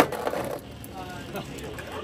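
Beyblade X spinning tops clattering against each other and the plastic stadium, a sharp click at the very start and a short rattle that dies away within about half a second as the battle ends. A soft laugh follows.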